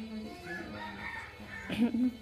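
An animal call with curving pitch, loudest near the end, over faint background music.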